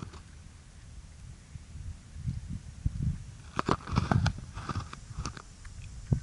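Low, uneven rumble of wind on the microphone, with a quick run of sharp clicks and knocks in the second half.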